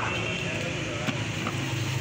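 Steady low engine hum of street traffic, with background voices and a couple of light clicks about a second in.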